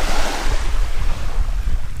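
A small wave washing up on a sandy shore, its hiss strongest at first and slowly fading, with wind rumbling on the microphone.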